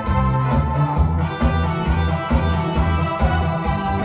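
Instrumental backing track of a Korean pop ballad playing over speakers, with a steady beat and a moving bass line.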